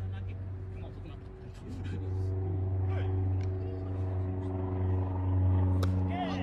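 A motor running steadily, a low hum with even overtones that grows louder about two seconds in, with faint distant voices. A single sharp crack just before the end.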